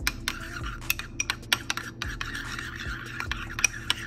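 Metal spoon stirring a thick mayonnaise-based remoulade sauce in a ceramic ramekin: irregular clinks and scrapes of the spoon against the bowl, several a second.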